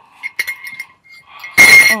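Metal teaspoon clinking against a ceramic mug while stirring: a few light ringing taps, then one loud, sharp clink near the end.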